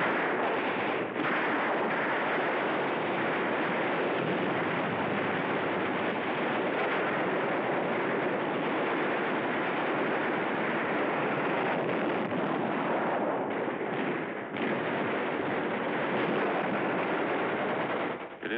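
Dense, continuous battle gunfire, a steady unbroken roar without separate shots standing out, on an old narrow-band film soundtrack.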